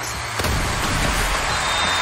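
Sound effects from an anime soccer clip: a sharp hit about half a second in, then a steady rushing noise.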